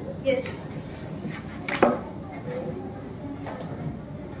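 Classroom room sound: a brief spoken "yes" at the start, then a low murmur of the room with one sharp tap or knock a little under two seconds in.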